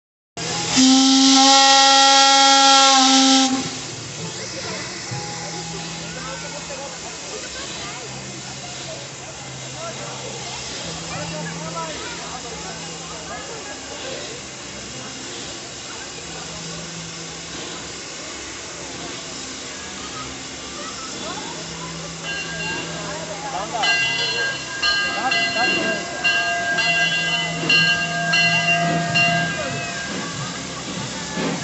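Narrow-gauge steam locomotive's whistle giving one long blast of about three seconds, the signal before the train pulls out. After it comes the murmur of voices, and fainter high steady tones come and go near the end.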